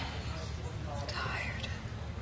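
Faint breathy whispering over a low steady hum.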